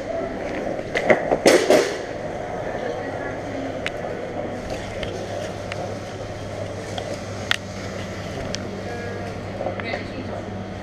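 Skateboard wheels rolling across a hard tiled floor, a steady rumble with a louder clattering stretch between one and two seconds in and a few sharp clicks later on.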